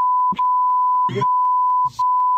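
Steady, loud, single-pitch censor bleep, broken by a few short gaps where snatches of a man's voice come through: spoken words being bleeped out.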